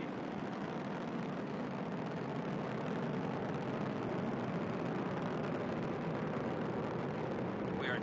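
Steady rumble of a SpaceX Falcon 9 rocket's nine first-stage Merlin engines firing during ascent, about half a minute after liftoff.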